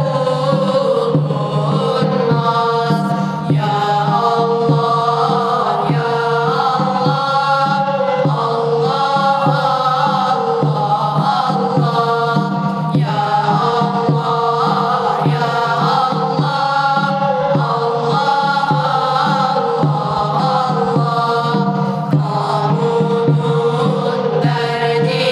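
A group of boys singing a Turkish Islamic hymn (ilahi) together in a continuous chant.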